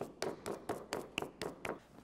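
Hands kneading wet pottery clay: a quick, even run of slaps and pats, about six a second.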